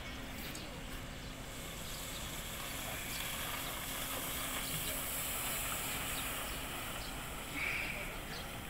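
Steady outdoor hiss that swells a little in the middle, with a faint steady low hum underneath and a short higher-pitched burst near the end.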